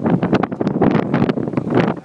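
Wind buffeting the phone's microphone in loud, irregular gusts.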